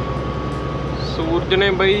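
Steady engine and road drone inside a semi-truck cab on the move, with a man's voice starting up about a second in.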